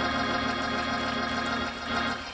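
Church organ holding a sustained chord, which fades near the end.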